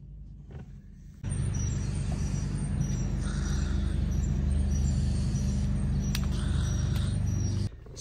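A motor vehicle's engine running steadily, starting about a second in and stopping abruptly just before the end.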